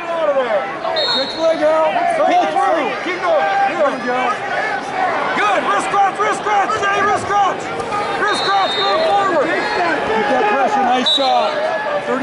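Arena crowd at a wrestling match: many spectators and coaches shouting at once, overlapping voices all the way through. A few short, high-pitched tones cut in now and then.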